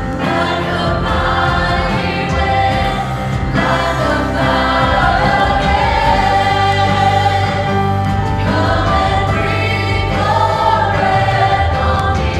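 Church worship team of several singers singing a slow worship song together over a band, with long held notes.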